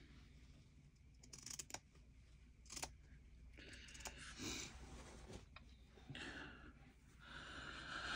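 Faint handling and cutting of heavy canvas or upholstery fabric with scissors: a few small clicks, then short soft swishes of fabric and blades, the longest near the end.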